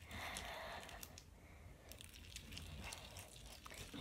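Hands kneading and squishing a blob of homemade slime as it is activated with saline solution: faint, with small scattered clicks.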